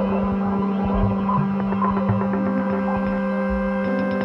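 Ambient electronic music from software and modular synthesizers: a steady low drone under several sustained tones, with a fast, glitchy clicking texture and occasional soft low thuds.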